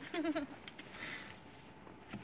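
A brief vocal sound near the start, then a snow brush sweeping snow off a car's rear with a soft, scratchy hiss.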